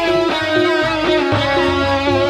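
Live campursari band music played loud through a sound system, with no singing: a melody line with bending, wavering notes over a steady pulsing bass.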